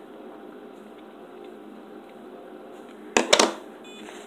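Plastic parts of a blood glucose testing kit being handled: about three seconds in, a quick cluster of three sharp clicks, over a steady low room hum.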